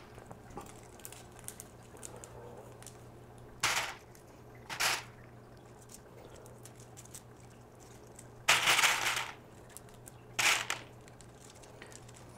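Expanded clay pebbles rattling and clicking as they are scooped by hand from a plastic basket and dropped around a hydroponic net cup, in four short bursts, the third the longest.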